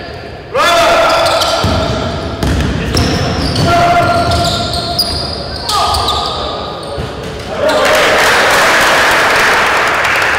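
Basketball play in a large gym: the ball bouncing on the court floor, sneakers squeaking and players' voices calling out, echoing in the hall.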